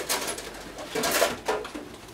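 A short, soft hum-like sound from a person's voice about one and a half seconds in, over faint light noises at the table.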